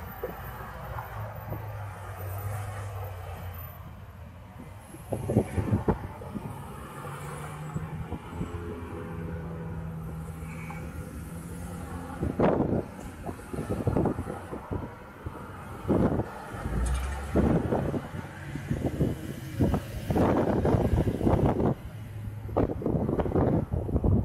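Road traffic at an intersection: a low hum of nearby cars with engine tones, then a run of louder rushes of noise from about halfway through as vehicles pass close by.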